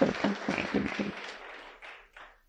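Audience applause with some distinct claps, dying away near the end.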